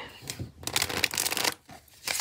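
A deck of cards riffle-shuffled by hand: a fast rippling flutter of cards starting about half a second in and lasting about a second.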